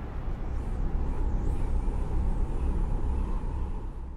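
Steady low rumbling noise with a faint, thin high whine that wavers during the first second and a half, then holds steady.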